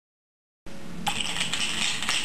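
Sound cuts in abruptly under a second in. Then come quick jingling, clicking rattles of the small plastic toys hanging from a baby's play gym, over a faint low room hum.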